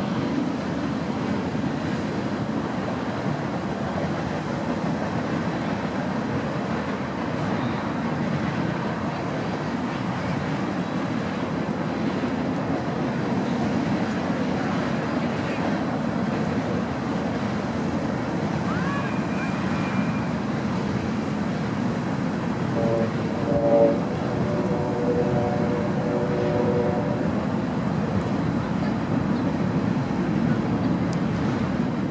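Steady wind rumble on an outdoor camera microphone, level throughout. About three-quarters of the way through there is a brief louder sound, followed by a few seconds of a held tone.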